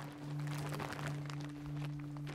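Rustling and crinkling of a soil-filled sack being handled in undergrowth. Under it runs a low, steady held note of background music.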